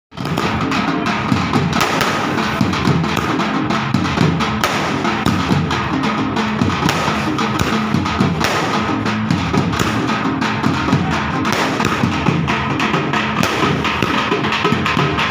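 Procession drums played together in a fast, continuous rhythm of dense strikes.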